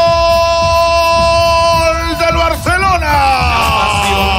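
A Spanish-language football radio commentator's long drawn-out goal cry: a single shouted note held for several seconds, then wavering and sliding down in pitch near the end, with music underneath.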